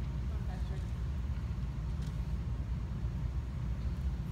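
Steady low rumble of room background noise, with a faint click about two seconds in.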